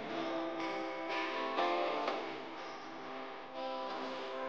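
Instrumental background music with plucked notes, a new note or chord starting about every half second and ringing on.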